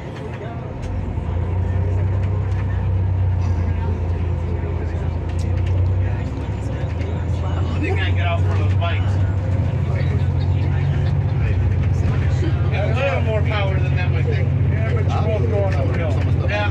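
Bus engine and road drone heard from inside the cabin while riding, a steady low hum that swells about a second in as the bus gets under way.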